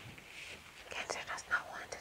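Soft whispering under the breath: breathy, unvoiced bursts with no full spoken words.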